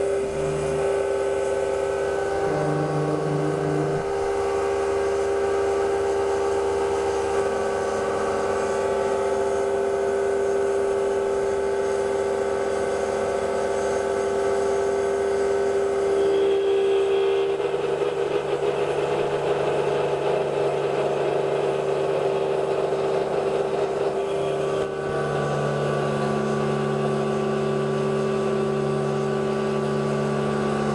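Grizzly G8689Z CNC mini mill cutting aluminium plate with an end mill: a steady machine whine of spindle and cutting. The mix of tones shifts a couple of times, about halfway through and again near the end.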